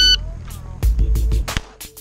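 A shot timer's start beep, a short high electronic tone lasting about a third of a second, at the very start, then background electronic music with a heavy beat.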